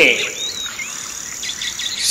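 Background nature ambience: a steady high insect trill, like crickets, with a few scattered bird chirps and a quick run of short chirps near the end.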